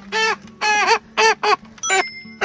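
A black hen, just caught and held in the hands, squawks five times in quick succession, each a short harsh call.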